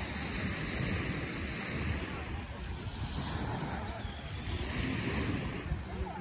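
Small waves washing onto a sandy shore, the wash swelling and fading every couple of seconds, with wind buffeting the microphone in a low rumble.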